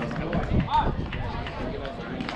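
Indistinct voices of people talking, with a few light clicks and knocks.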